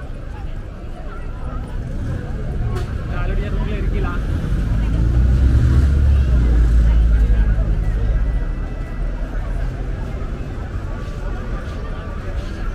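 A large motor vehicle passes close by: a low engine rumble builds from about four seconds in, is loudest in the middle, then fades away. Steady crowd chatter runs underneath.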